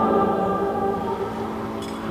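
Choir singing a held chord that slowly dies away, with a faint click shortly before the end.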